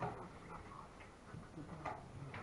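Two sharp clicks about two seconds apart, with a weaker tap between them: the plastic tapping of play at a draughts table, over a faint low murmur in the hall.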